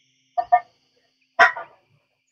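An animal calling in the background: a quick double call about half a second in, then a louder single call about a second later.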